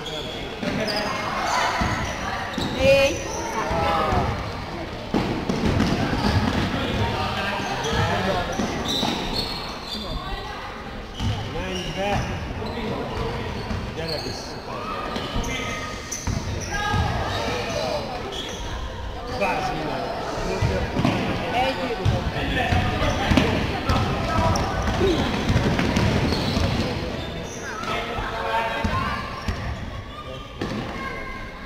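Basketball bouncing on a sports-hall floor during live play, with players' voices calling out over it.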